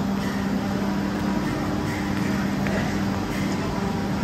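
A steady low machine hum of constant pitch, like a fan or motor running, over a rumbling background din.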